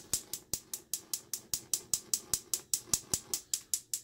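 Gas range's electronic spark igniter clicking rapidly and evenly, about six clicks a second, as the burners are lit.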